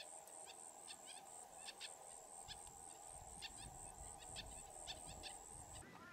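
Faint bird chirps, short and high, over a rapid, very high-pitched pulsing trill of about four to five pulses a second. The source fits a double-barred finch.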